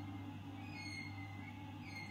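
Quiet room tone with a low steady hum and no distinct event.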